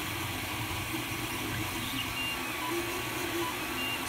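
Creality Ender 3 Pro 3D printer running mid-print: the stepper motors give short, shifting tones as the print head moves, over the steady hum of the hotend fan.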